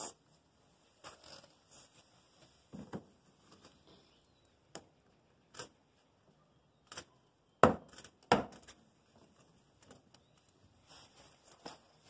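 Scattered soft knocks and rubbing as a 3D-printed plastic adapter is pushed by hand into the rubber grommet in a sheet-metal blast cabinet's back panel, with the loudest two thumps about two-thirds of the way through.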